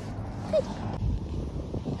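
Wind rumbling on the microphone, a low haze that grows stronger in the second half, under one short sung "good" about half a second in.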